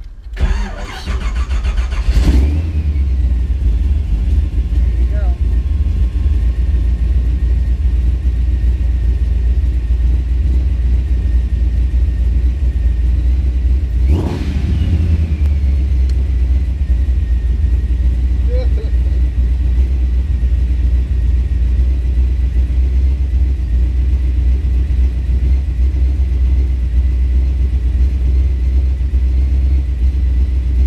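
Procharged 572 cubic-inch big-block Chevrolet V8 cranking and firing about two seconds in, then idling with a heavy, steady low rumble. There is a single short throttle blip about halfway through, then it settles back to idle.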